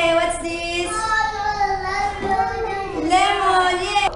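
A young child singing, holding long drawn-out notes that slide up and down in pitch.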